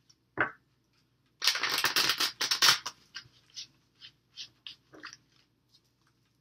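A deck of tarot cards being shuffled and handled: a soft knock, then a dense flurry of card flicks lasting about a second and a half, followed by scattered light taps.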